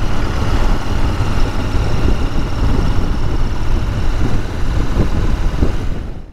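Royal Enfield Interceptor 650's parallel-twin engine running steadily while the motorcycle rides along, under a heavy rush of wind on the microphone.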